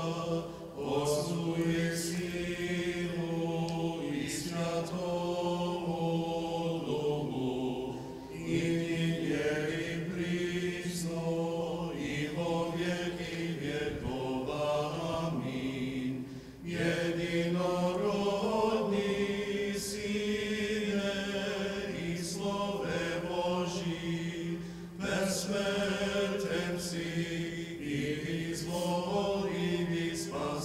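Eastern Orthodox liturgical chant: voices singing an antiphon of the Divine Liturgy in long sung phrases, with brief pauses about every eight seconds.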